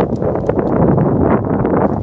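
Wind buffeting the phone's microphone: a loud, steady rush of noise.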